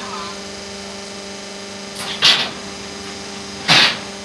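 QT4-15 hydraulic concrete block-making machine running: a steady hum from its hydraulic power unit, broken twice by short, harsh bursts of noise, about two seconds in and again near the end, as the machine works through its cycle.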